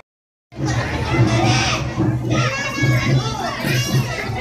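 Crowd of many people, children among them, talking and calling out at once over a steady low hum. It starts after half a second of silence.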